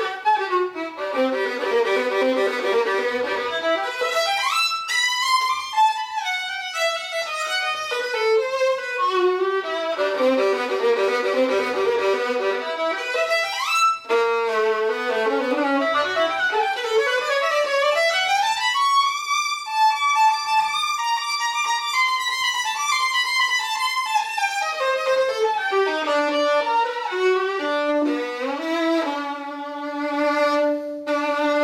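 Solo violin, an old instrument labelled Josef Klotz with a spruce top and one-piece flamed maple back, played with the bow. It plays fast runs that sweep down and up across about two octaves several times, then settles on held low notes near the end.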